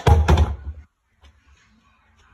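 Skateboard deck knocking and thudding against a wooden floor as it is set down and handled: a quick cluster of loud, heavy thuds in the first second, then near quiet.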